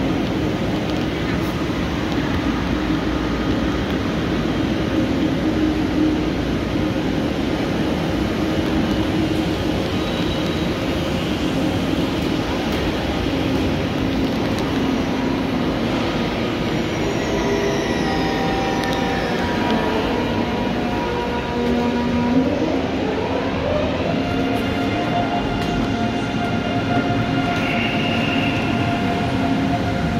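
Steady rumble and hum of a high-speed electric train standing at an underground station platform. About two-thirds of the way in, an electric drive whine rises in pitch over a couple of seconds and then holds steady.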